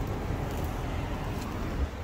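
Steady low rumble and hiss of the surroundings, with a phone being carried and handled, and a small bump near the end.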